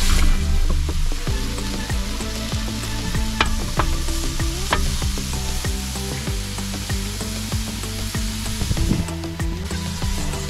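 Halved bananas sizzling on a barbecue hotplate as they caramelise, with the scrape and clack of a spatula turning them over, a few sharp clicks in the middle. Background music plays underneath.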